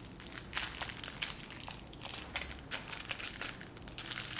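Thin plastic food wrapper crinkling as it is handled and picked open, in quick irregular crackles.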